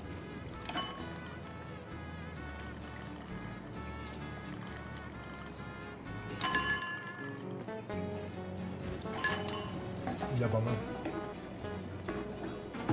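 Background music, with tequila being poured from a bottle into stemmed tasting glasses and glass clinking. A brief bright ringing comes about six and a half seconds in.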